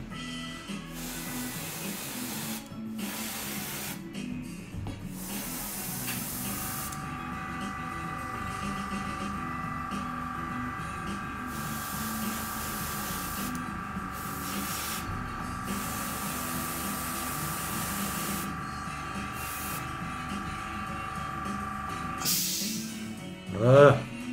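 Background music throughout. In the first few seconds there are short on-off bursts of air hiss. Then a small motor runs with a steady whine and buzz for about fifteen seconds, stopping shortly before the end.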